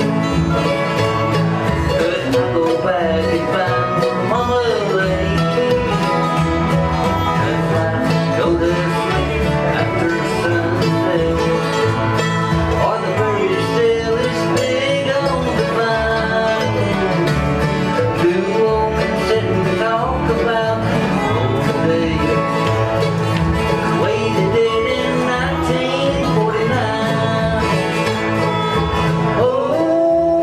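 Bluegrass band playing an instrumental passage on acoustic guitars, upright bass and a resonator guitar (dobro), with sliding notes running through the melody.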